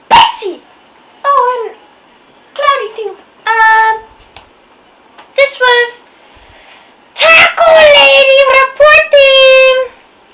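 A girl's voice in short, exaggerated utterances with pauses between them, then a long, loud, drawn-out vocal sound from about seven seconds in, its pitch falling slightly and then holding.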